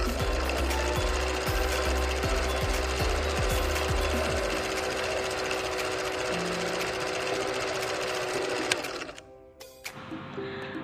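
Film projector sound effect: a rapid, even clatter over a steady hum, stopping suddenly about nine seconds in.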